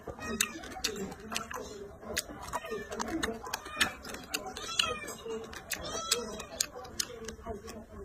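Close-up chewing with many crisp crunches and wet mouth clicks as spicy pickled vegetables are eaten. A few short high calls from an animal sound in the background about four times.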